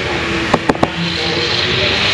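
Three quick clicks, then from about a second in a hand brushing over a freshly rendered cement-and-sand plaster wall.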